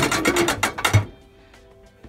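Rattling clatter of a portable dishwasher's loaded wire rack and a plastic colander being moved inside the tub, stopping about a second in.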